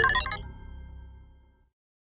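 Closing sting of a short musical logo jingle: a quick run of high notes at the start, ringing out and fading away by about a second and a half, then silence.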